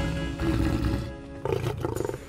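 Cartoon lion roaring, a low rumbling roar that fades out about a second in, over background music.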